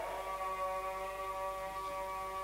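A single steady, held pitched tone with several overtones, unbroken and moderately quiet, with a few upper overtones fading about two-thirds of the way through.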